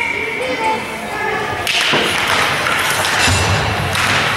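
Ice hockey play in an arena: skates scraping and sticks and puck knocking on the ice after a faceoff, with spectators talking. The sound gets louder and busier about two seconds in.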